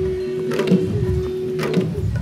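A group of Garo long drums (dama) beaten together in a steady dance rhythm, with a sharp stroke standing out about once a second. A single long held note sounds over the drumming and stops shortly before the end.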